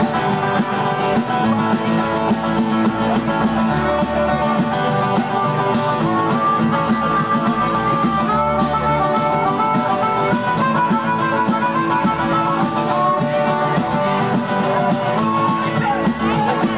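Live band playing an instrumental passage: strummed acoustic guitars over a drum kit, with a melodic lead line wandering up and down in pitch.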